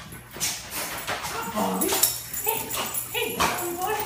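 A dog whimpering and yipping in a run of short, excited cries as it greets its returning owner, jumping up at him.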